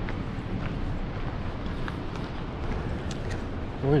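Footsteps crunching on a gravel path over a steady rushing noise.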